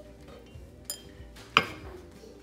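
A white ceramic bowl and serving utensil clinking as the bowl is handled: a light clink near the middle, then a louder, sharp clink with a brief ring about a second and a half in.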